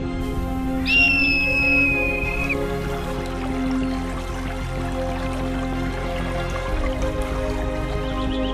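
A bird of prey's single long, high whistled call about a second in: a quick rise, then a drawn-out, slightly falling note lasting about a second and a half. It sits over calm instrumental background music.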